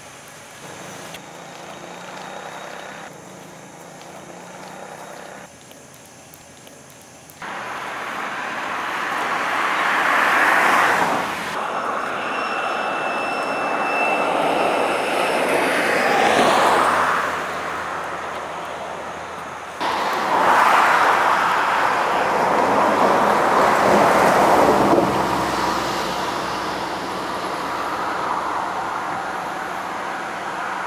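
Road traffic at night: cars passing one after another, each a swelling and fading rush of engine and tyre noise. It starts faint and jumps suddenly louder about seven seconds in, with about three passes in all.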